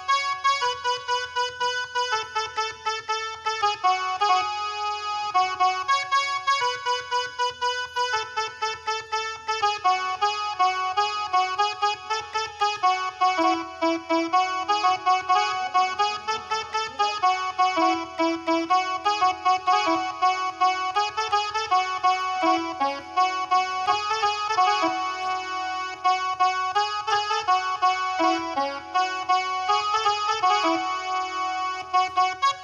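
Casio SA-41 mini keyboard playing a Marathi song melody one note at a time with one hand, in a quick, unbroken run of short notes.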